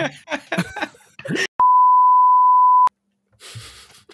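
A steady, high-pitched censor bleep lasting about a second and a quarter, cutting in and out abruptly over a silenced soundtrack: an edited-in tone masking a spoken word.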